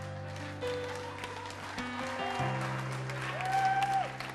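Sustained keyboard chords held steady, the chord changing about two and a half seconds in, over crowd noise from the audience.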